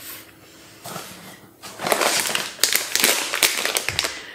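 A plastic sweets bag crinkling and crackling as it is picked up and handled, a dense run of crinkles lasting about two seconds in the second half.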